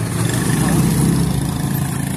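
Motorcycle engine of a motorized tricycle (motorcycle with sidecar) idling, a steady low rumble.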